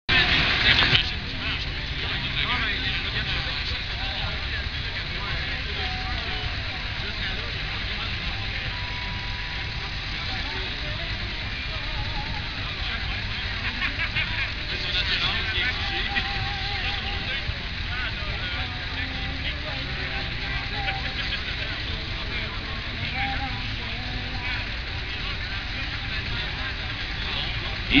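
Spectators chatting and murmuring over the steady low rumble of idling pulling tractors, with a brief loud burst of noise in the first second.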